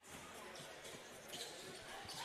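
Faint basketball-court sound: a basketball being dribbled on a hardwood floor, with low voices in the hall.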